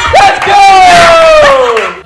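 Friends yelling in celebration of a right answer: a short whoop, then one long, loud shout that slides down in pitch and breaks off near the end.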